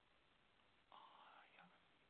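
Near silence, with a faint, brief whisper from the presenter about a second in.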